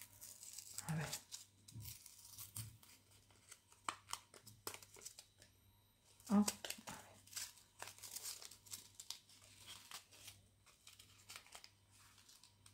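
Paper and card needle packet being opened by hand: crinkling and tearing of the paper wrapping with many small scattered clicks, in two spells, the first at the start and the second past the middle.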